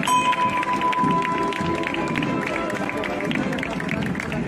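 A single stroke of the bell hung on the front of a procession float, ringing clearly for about two seconds before fading. Underneath, processional music plays, with a crowd around it.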